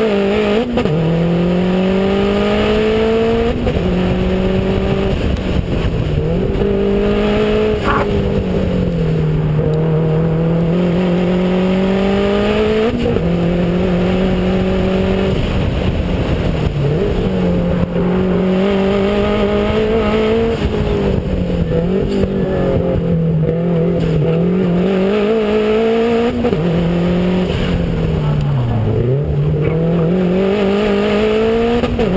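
Subaru WRX's turbocharged flat-four engine driven hard around a race track: its note climbs repeatedly under acceleration and drops sharply at each gear change or lift for a corner. Heavy wind and road noise on the externally mounted camera run underneath, with a single short click about eight seconds in.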